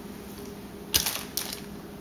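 Hands crumbling a block of queso fresco: two short crackles about half a second apart, over a low steady room hum.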